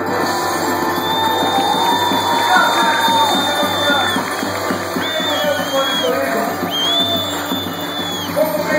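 Forró pé de serra band playing live: accordion with long held notes over the steady beat of a zabumba drum and triangle, with audience voices mixed in.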